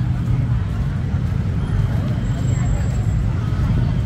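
Street noise: a steady low rumble with faint voices of passers-by.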